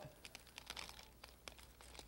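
Near silence: faint crinkles and ticks of masking paper being pressed onto a wall, over a low steady hum.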